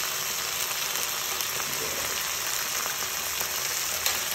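Onion, capsicum and green chillies frying in hot oil in a kadai, a steady sizzle as soy sauce is poured in over them.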